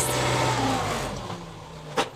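Tractor diesel engine heard from inside the cab, running steadily, then easing off and going quieter about a second in.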